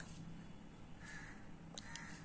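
Faint, harsh bird calls, one about a second in and another just after, over quiet room tone with a couple of faint ticks.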